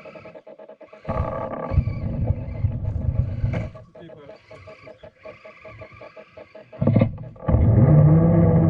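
Electric motor and gearbox of a radio-controlled scale crawler whining and growling under throttle on a snowy trail, loud for a couple of seconds about a second in, easing off, then coming back near the end with the pitch rising and falling.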